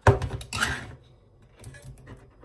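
Kitchen handling noises in a sink: a sharp knock, then a brief clatter about half a second later, with a few faint clicks after.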